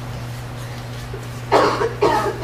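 A person coughs once, sharply, about one and a half seconds in, over a steady low hum in the room.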